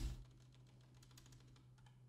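Faint computer keyboard keystrokes: one sharper key click at the start, then light taps as characters are deleted from a terminal command line, over a steady low hum.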